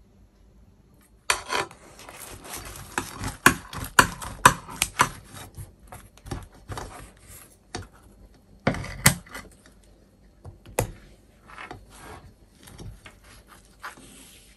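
Kitchen scissors snipping through the crisp baked crust of a pie: a run of crunchy snips and blade clicks that starts about a second in, densest over the next few seconds, with a louder clack near the middle before it thins out.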